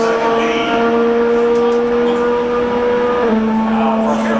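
IndyCar engines (2.2-litre twin-turbocharged V6s) running at high revs on the track, a loud, steady, high-pitched drone that shifts slightly in pitch about three seconds in.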